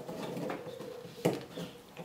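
Small clicks and taps of 3D-printed plastic parts being handled as a plastic clip is pressed onto a gear's peg, with the sharpest click about a second and a quarter in.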